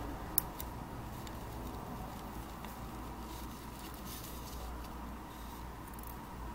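Light handling of a small plastic rocker switch: one sharp click about half a second in, then a few faint taps over a steady low room hum.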